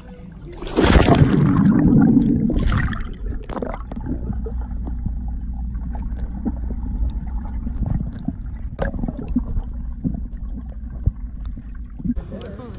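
A loud splash as a phone camera plunges into a swimming pool, followed by the muffled underwater sound of the pool: a steady low rumble with faint scattered clicks and bubbling.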